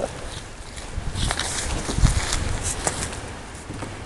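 A Rhodesian Ridgeback puppy moving about inside a cardboard box: scattered scrapes and rustles of its paws on the cardboard, with a dull bump against the box about two seconds in.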